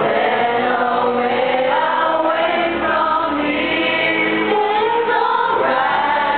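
A group of young men and women singing a song together.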